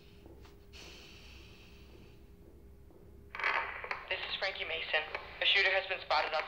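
A quiet room with a faint rustle, then about three seconds in a voice starts talking over a handheld two-way radio.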